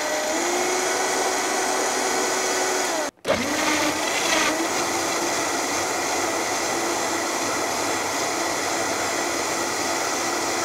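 Vita-Mix blender running at high speed, puréeing chunks of watermelon and honeydew with no added liquid; its motor whine holds at a steady pitch after being turned up from low. About three seconds in the sound cuts out for a moment, then the motor comes back up to speed and runs on steadily.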